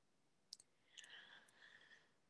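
Near silence with a few faint, short clicks about half a second apart.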